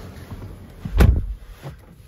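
A BMW iX3's driver's door pulled shut from inside the cabin, a single heavy thud about a second in.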